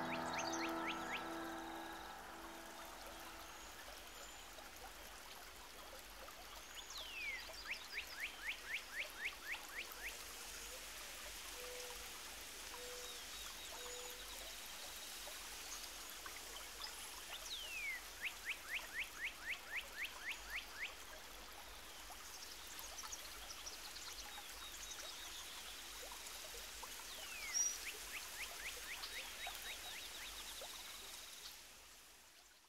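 The music fades out in the first couple of seconds, leaving outdoor ambience with a steady hiss. A bird sings three times, about ten seconds apart: each song is a falling whistle followed by a fast run of about ten short notes, about four a second.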